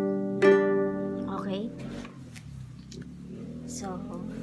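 Ukulele strummed once, a G major chord, about half a second in and left to ring out and fade.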